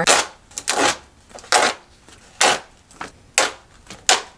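Paper cards handled close to the microphone: a series of short, crisp crackling rustles, about one every second.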